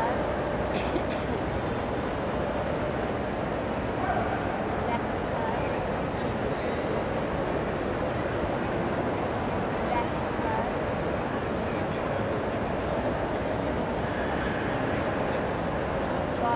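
A steady murmur of a large indoor crowd, with a few short dog yips and whines scattered through it.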